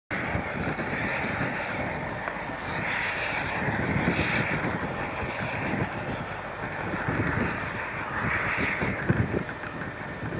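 Wind buffeting the microphone in irregular low rumbles over a steady rushing noise, with a small steam locomotive working up a mountain line in the distance.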